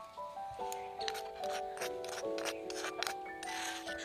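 Background music with held, slowly changing notes, over repeated short scrapes and clicks of a steel spoon against a small clay bowl as dry spice powder is mixed.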